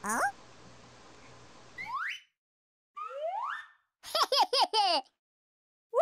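Cartoon comedy sound effects: a few short rising whistle-like glides, then a quick run of bouncy up-and-down squeaks about four seconds in, with dead silence between them.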